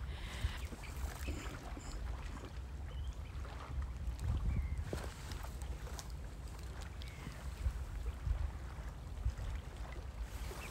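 Wind buffeting the microphone in uneven gusts, over small lake waves lapping on a pebble shore.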